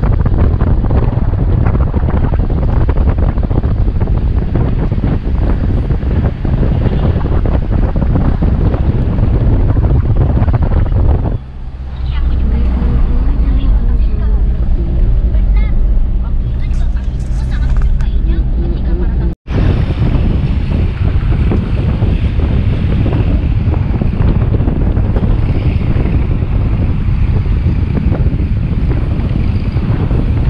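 A moving car, with heavy wind buffeting on the microphone. About a third of the way in the wind eases for several seconds, leaving a steady engine drone. The sound then drops out for an instant and the wind buffeting returns.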